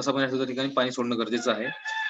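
A drawn-out, steady-pitched call, about a second long, sounds in the background near the end over a man's speaking voice.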